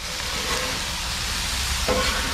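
Chicken and vegetables sizzling steadily on the hot steel cooktop of a Blackstone gas griddle during a stir-fry.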